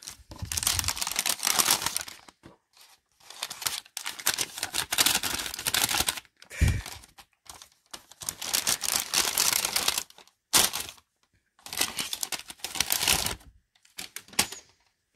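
Brown kraft paper bag crinkling and rustling in several bursts with short pauses as it is unrolled, opened and handled, with a single thump about halfway through.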